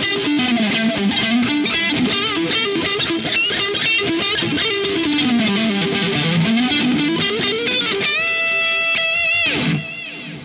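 Ibanez SA360NQM electric guitar played with a distorted, high-gain tone: a fast run of lead notes, then a long held note with vibrato from about eight seconds in, ending in a quick downward pitch dive.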